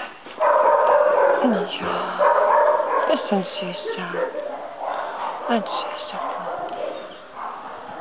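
Several kennel dogs barking and yipping at once, loudest in the first two seconds and fainter after, with a few soft murmured words from a person.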